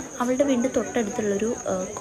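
A steady, unbroken high-pitched insect trill, under a woman's voice talking.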